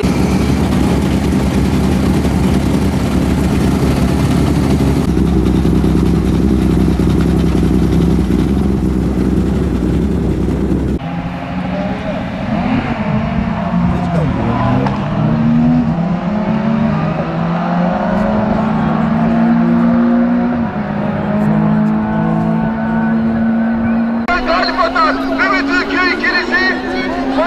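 Several BMW 3 Series touring race cars running hard on a circuit, their engines at high revs. Later their notes rise and fall as the cars pass and change gear.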